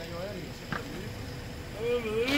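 Faint voices talking in the background over a low, steady hum, with a single sharp click just under a second in.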